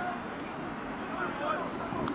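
Field-level stadium ambience from a football broadcast: a steady, even wash of noise with faint, indistinct voices on the field about halfway through.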